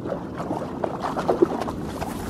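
A hooked bass splashing and thrashing in the shallows at the bank as it is grabbed by hand: irregular splashes, with a sharp one about one and a half seconds in.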